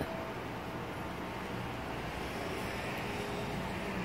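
Steady outdoor background noise: an even, low rush with a few faint steady tones and no distinct events.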